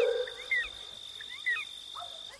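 Short bird-like chirps in small clusters, about once a second, over a faint steady high-pitched tone, as the music fades out at the start.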